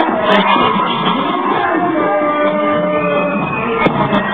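Live amplified music, a dense mix with sustained melodic lines held over it. Two brief sharp clicks cut through, one shortly after the start and one near the end.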